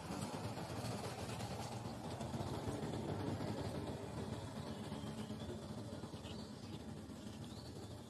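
Steady outdoor background noise with a low rumble, and a few faint high chirps past the middle.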